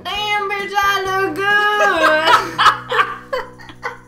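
A woman's high-pitched, drawn-out vocal squeal that breaks into short bursts of laughter, fading out near the end, over a background music bed.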